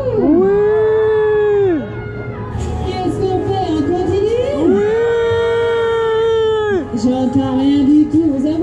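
A rider yelling two long 'woooo' cries on a swinging fairground ride, each held for about two seconds with the pitch sliding up at the start and dropping away at the end, over fairground music and crowd noise.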